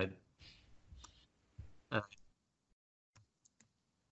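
A pause in a man's talk, mostly quiet, with a short hesitant 'uh' about two seconds in and a few faint clicks near the end.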